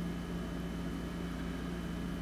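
Steady low electrical-mechanical hum of a running appliance, with a faint thin high whine above it and no change throughout.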